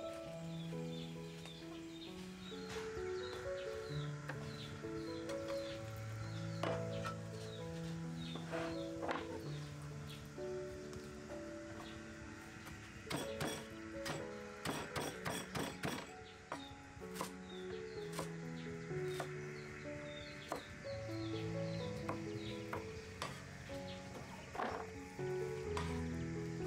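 Background music: a slow melodic tune of held notes. Over it, a cleaver chops greens on a wooden chopping board, with scattered knocks and then a quick run of chops about halfway through.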